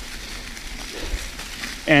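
Mountain bike tyres rolling over a leaf-covered dirt trail: a steady rush of riding noise with a low rumble, which gives way to the rider's voice near the end.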